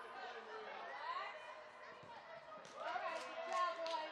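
Scattered shouts and calls from players and spectators, echoing in a large indoor hall, with a few sharp knocks in the last second or so.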